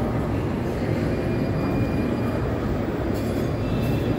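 Steady low rumbling ambient noise of a large shopping-mall atrium, with no distinct event standing out.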